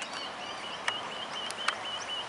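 Birds calling at an outdoor ground, one repeating a short, high chirp about five times a second. Three sharp clicks come from about a second in.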